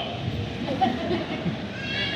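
Scattered audience laughter with voices, in reaction to a joke.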